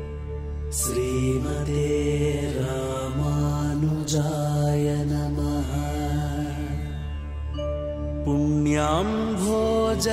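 Devotional Hindu chant music: a steady held drone under a chanted vocal line with long, gliding notes, and a rising glide near the end. A few sharp strikes accent it, about a second in and again around four seconds.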